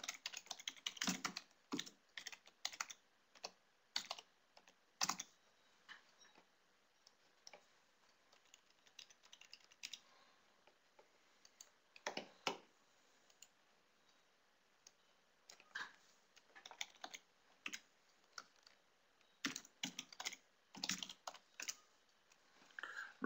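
Faint computer keyboard typing: keystrokes in irregular runs while a login name and password are typed in. There is a dense run in the first five seconds, scattered taps through the middle, and another run near the end.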